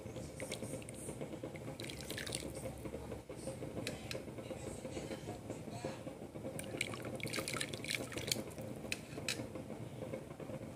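Cooking liquid dripping and trickling off a ladle of boiled pigeon peas back into the pot, in scattered small splashes that come thickest near the end.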